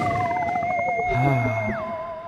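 Electronic sci-fi sound effects of a logo intro sting: a wavering, theremin-like tone held steady, another tone gliding down in pitch, and a high held tone that drops sharply near the end.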